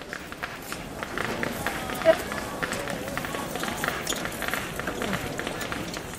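Rustling and scraping of burlap sacks being handled and pulled open on snow, with scuffing footsteps, under faint background voices.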